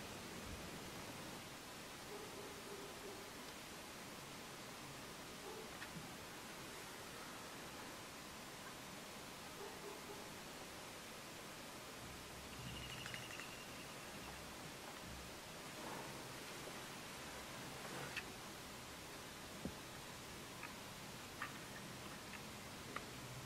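Quiet outdoor ambience: a faint steady hiss with a few scattered small clicks, mostly in the second half, and a faint short high call about halfway through.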